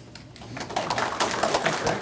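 Audience applauding, starting about half a second in.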